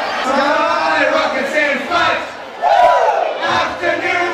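Live audience shouting and cheering, many voices at once, with one loudest shout near three seconds in.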